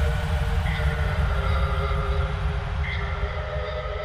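Closing soundtrack of a sports sponsor ad: a deep, steady rumble under a few held tones, with a short high tone sounding twice, slowly dying away.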